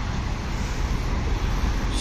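Steady road traffic noise from cars and motorbikes moving along a wide multi-lane road, an even rumble with no single vehicle standing out.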